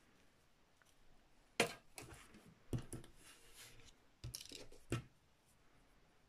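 Hands handling cross-stitch materials and thread: about half a dozen light, sharp clicks and taps, with brief rustling between them.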